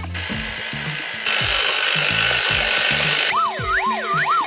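A steady rasping, hissing noise effect that gets louder about a second in and cuts off suddenly near the end, over a children's music bass line; as it stops, a wobbling, springy 'boing' sound effect of looping rising and falling pitch begins.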